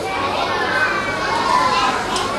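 Many children's voices chattering at once, overlapping into a continuous hubbub.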